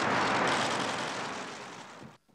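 Steady outdoor background noise, a broad rushing hiss that fades away over the last second.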